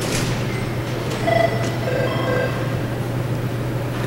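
Telephone ringing with a short electronic trill of tones at several pitches, from about one second in to halfway through, over a steady low hum.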